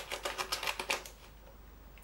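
Small steel folding scissors of a slip-joint pocket knife snipping through paper in a quick run of crisp clicks, about ten a second, which stop about a second in. The blades cut the paper easily.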